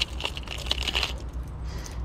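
Hard plastic fishing lures and their treble hooks clicking and rattling in a clear plastic compartment tackle box as a lure is picked out: a run of light, irregular clicks, with a couple of sharper ones.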